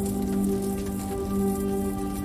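Slow ambient meditation music of sustained, held tones, with a soft rain-like patter over it.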